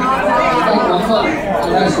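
Many people talking at once around dinner tables: a steady hubbub of overlapping conversation.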